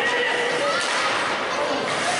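Several voices calling and shouting at once in an ice rink, echoing around the hall, with a sharp knock near the end.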